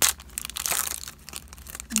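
Foil wrapper of a Pokémon booster pack crinkling and tearing as it is opened by hand. There is a sharp crackle at the start and a longer burst of crinkling about half a second to a second in.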